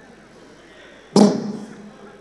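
Quiet room tone, then one sudden loud thud a little over a second in that dies away over about half a second.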